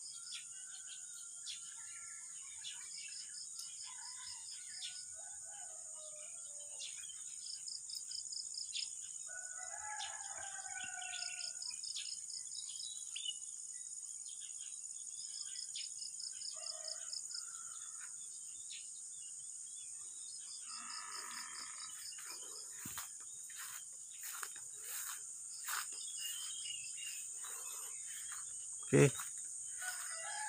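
Outdoor rural ambience: a steady high insect drone with a rapid pulsed insect chirp about every three to four seconds, and scattered bird calls including distant rooster crowing.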